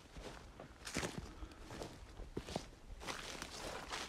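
Footsteps on dry, matted grass and dead leaves, a faint repeated rustling crunch with each step. It is loudest about a second in and again near the end.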